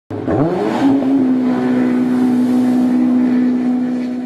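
An engine revving up, its pitch climbing quickly over the first second, then held at a steady high rev before starting to fade near the end.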